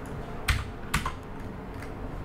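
Typing on a computer keyboard: a few separate keystrokes, the two loudest about half a second apart near the start, with lighter taps near the end.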